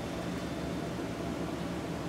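Steady background hiss with a faint low hum: room tone.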